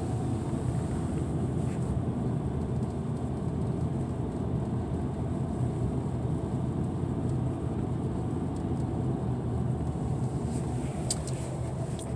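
Steady car-cabin rumble of engine and tyres while the car climbs a steep mountain grade, with a few faint ticks near the end.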